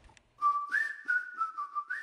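Outro music: a whistled tune over a light clicking beat, starting about half a second in.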